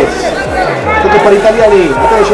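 Speech: a football commentator's voice calling the play.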